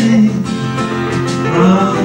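A folk-rock band playing live, with acoustic guitar and a drum kit.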